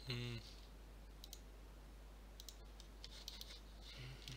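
Faint, scattered computer mouse clicks: a couple about a second in and a quick cluster near three seconds. A short hum from a voice is heard right at the start.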